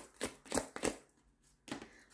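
Tarot cards being shuffled by hand: a few sharp clicks about a third of a second apart, a short pause, then one more click near the end.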